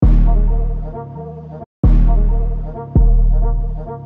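Programmed 808 bass notes playing back from a beat: three long, deep pitched hits, at the start, just under two seconds in and about three seconds in, each striking hard and fading away, with a brief silent gap before the second.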